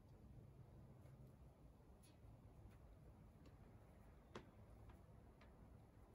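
Near silence with a few faint, brief ticks and clicks, one sharper click about four seconds in.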